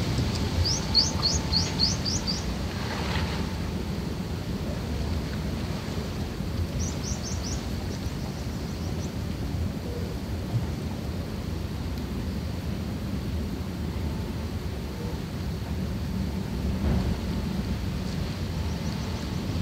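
Steady low rumbling noise, like wind buffeting the microphone. A quick run of about six short, high, rising chirps comes in the first few seconds, and a shorter run comes about seven seconds in.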